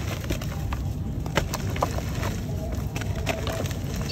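Chunks of dry mud crumbling and breaking apart in hands in water, with many small sharp crackles and snaps.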